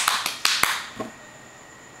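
A few sharp hand claps in the first half-second, then quiet room tone.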